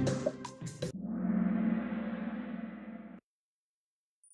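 Kahoot quiz-game countdown music ending about a second in, followed by a gong-like time's-up sound that rings for about two seconds and cuts off suddenly.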